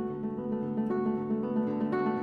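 Solo classical guitar playing a Romantic character piece: fingerpicked melody notes over a steadily repeated low note.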